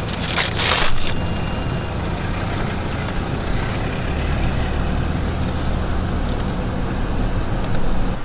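Car engine idling, heard from inside the cabin, as a steady low hum. In the first second a paper takeout bag rustles briefly.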